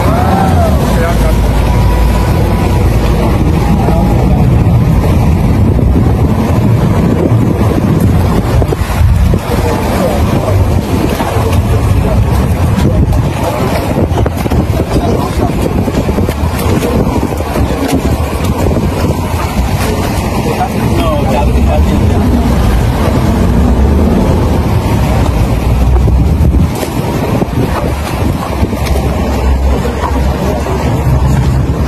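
Outboard-powered speedboat running under way, a steady engine and water noise, with wind buffeting the microphone.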